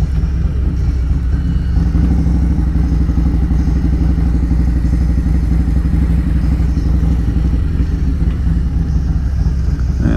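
Harley-Davidson Road Glide Special's V-twin engine with a 2-into-1 aftermarket exhaust running steadily at low speed.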